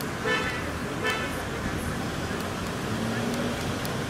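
City street traffic running steadily, with two brief toots about a second apart near the start.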